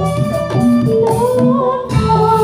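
Javanese gamelan music accompanying a jathilan dance, with held notes played in an even rhythm. A singer's voice comes in about a second in.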